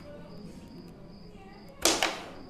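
Carrom break shot: the striker flicked into the packed centre cluster of wooden carrom men, a single loud sharp clack with a brief clatter as the pieces scatter, near the end.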